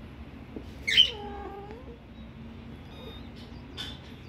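A kitten's sharp, high cry about a second in, running straight into a short mew that dips and then rises in pitch, made during rough play-fighting with another kitten.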